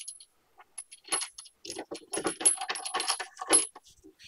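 Small loose steel parts clinking and rattling in a quick run of light metallic clicks, starting about a second in: new skid-plate nut plates and hardware being worked into the frame cutouts.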